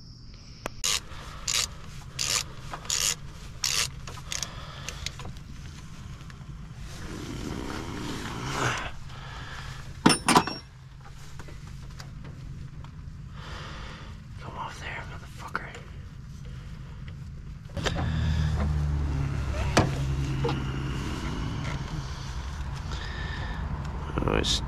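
Hands and tools working on radiator hoses under a car: a run of about seven evenly spaced clicks in the first few seconds, then scraping and rubbing, and two loud knocks about ten seconds in. A louder steady low rumble comes in about eighteen seconds in.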